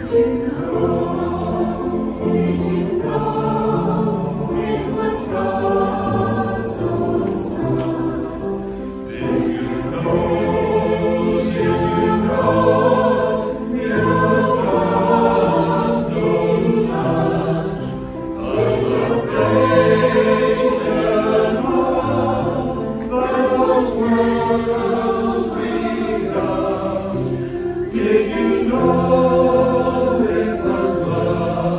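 Mixed choir of men and women singing together in held chords, in long phrases with short breaks between them.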